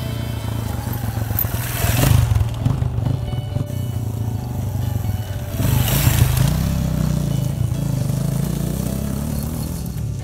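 Off-road motorcycle engine on a dirt track, growing louder as the bike comes on. Throttle surges come about two seconds in and again as it passes close by about six seconds in, with the engine pitch then rising as it pulls away. Background music plays throughout.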